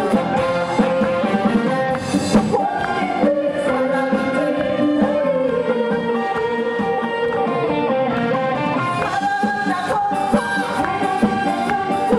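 Live performance of a Korean popular song: a female singer with a live band of drums and guitar, playing steadily throughout.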